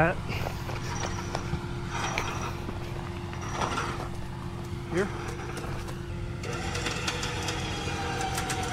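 Pickup truck engine idling steadily under a winch recovery, a low rumble with a steady hum over it. About six and a half seconds in, a higher whine joins.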